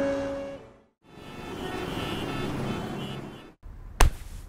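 Theme music dies away, then after a short gap a rushing noise swells and fades over about two and a half seconds. A sharp hit lands right at the end.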